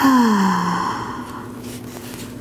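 A woman's long, voiced sigh on the out-breath, falling in pitch and fading over about a second: a releasing exhale while settling into a yoga pose.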